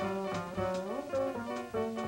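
Live small-group jazz, with a plucked upright double bass to the fore and a note that slides up about a second in.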